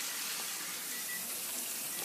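Battered chicken deep-frying in a pot of hot oil: a steady sizzle.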